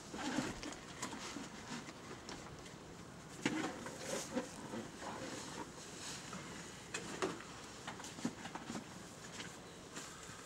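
Breath blown in uneven puffs into a dry grass tinder bundle holding a bow-drill ember, coaxing it towards flame, with the dry grass rustling and crackling in the hands. The loudest puffs come about three and a half and seven seconds in.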